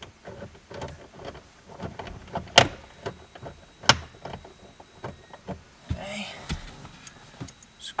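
Scattered clicks and knocks of a socket tool, flashlight and hands against the plastic dashboard trim under a pickup's dash, while the tool is fitted to a screw. Two sharp clicks stand out a few seconds in.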